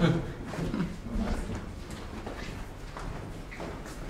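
Footsteps of a small group walking through a hallway, a run of irregular soft thuds, with a few murmured voices in the first second or so.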